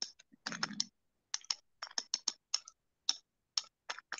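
Computer keyboard typing: quick, irregular key clicks, a few per second, with a brief low sound under the keys about half a second in.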